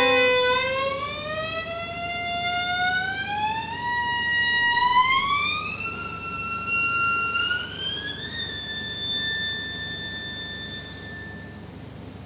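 Solo violin bowing one long note that slides slowly upward in stages over about eight seconds, from a middle pitch to a high one. The high note is then held and fades out shortly before the end.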